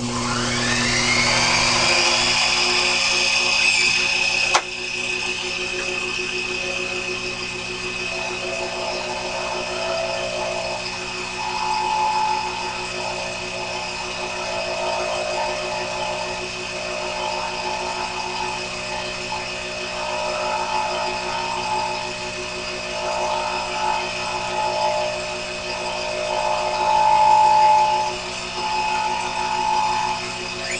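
Small benchtop lathe's motor starting with a click and winding up to speed over about two seconds with a rising whine, a sharp click about four and a half seconds in, then running steadily with a whine whose tone wavers in the later part.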